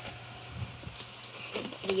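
Faint rustling and a few light taps from a small paper food box being handled and its end flap opened.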